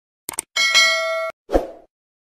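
Subscribe-button animation sound effects: a quick double mouse click, then a bright bell ding that rings for under a second and cuts off abruptly, followed by a short low thump.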